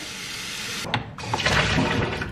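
Water running from a kitchen tap into a container to be measured for a soup pot. It stops just under a second in and starts again a moment later with a fuller, lower sound.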